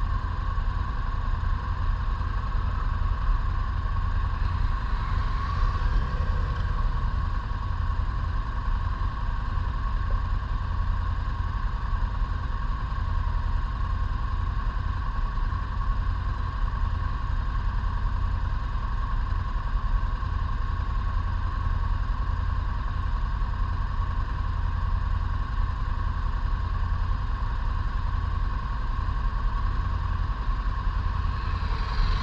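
A vehicle engine running steadily under a constant low rumble, with no change in pace.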